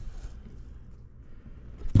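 Quiet, low rumble of a handheld camera's microphone being moved about, with a short louder rustle just before the end.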